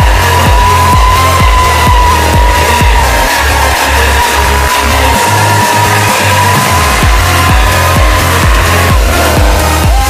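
Dance music with a steady beat, over a motorcycle's sustained high-pitched whine that holds at one pitch for most of the stretch and fades near the end.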